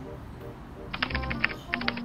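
Rapid keystrokes on a laptop keyboard, starting about halfway through, over background music.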